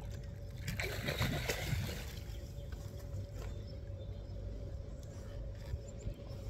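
Water splashing for about a second, starting about a second in, as a hooked fish is brought to the surface beside a kayak, over a steady low rumble.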